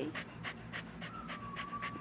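A dog panting rapidly and rhythmically, short quick breaths in and out at a steady pace close to the microphone.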